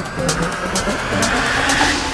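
Psytrance build-up with the beat dropped out: a slow rising synth sweep over a swelling noise riser that peaks near the end.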